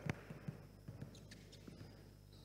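A basketball being dribbled on an indoor court floor, faint bounces about two a second, with short sneaker squeaks on the floor.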